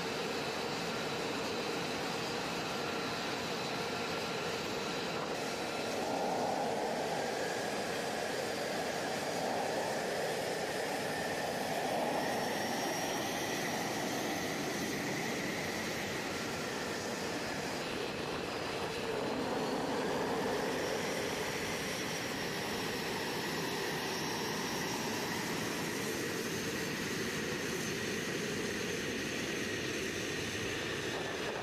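F-35A jet engine running at ground idle: a steady turbine whine with several high tones over a rushing noise. A few of the tones shift slightly in pitch partway through.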